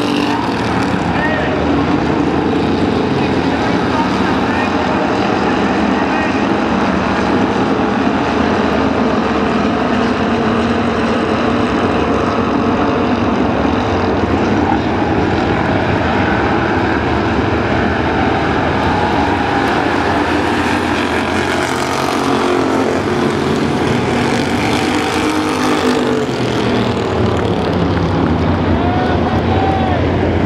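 Hobby stock race cars running at racing speed around a dirt oval: a steady, loud drone of several engines, rising and falling in pitch as cars go by.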